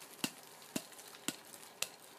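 Four sharp taps about half a second apart: a hand knocking on the side of a terracotta clay pot to loosen the bark potting mix around an orchid's roots.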